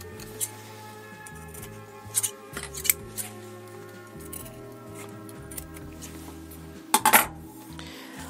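Small scissors snipping the corners of a faux fur seam allowance: a few sharp snips spaced a second or more apart, with a louder clack about seven seconds in. Steady background music runs under it.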